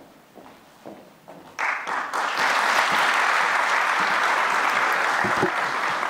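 A seated audience in a large hall applauding, starting suddenly about one and a half seconds in and holding steady before tapering off near the end.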